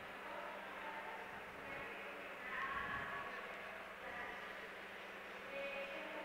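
Quiet room tone: a faint steady hum with faint, indistinct background sounds that rise a little around three seconds in.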